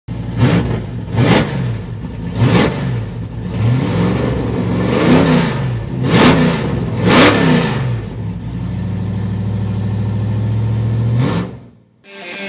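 A car engine revved in a series of blips, the pitch rising and falling with each one, then held at a steady higher speed for a few seconds before dropping away near the end.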